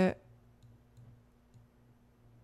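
A few faint computer-mouse clicks, spaced about half a second apart, over quiet room tone with a steady low hum.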